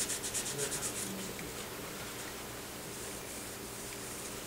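Sandpaper rubbed by hand over the finish of a harp's pillar in quick, even back-and-forth scratching strokes, about eight a second, sanding off paint marks that sit on top of the finish. The strokes stop about a second in, leaving only faint handling sounds.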